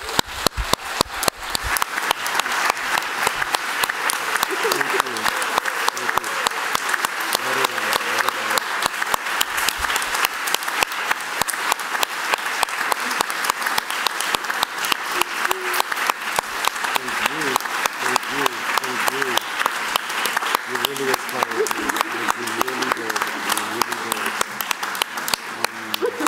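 A large audience applauding, the clapping building up over the first couple of seconds and then holding steady and sustained, with some voices audible over it.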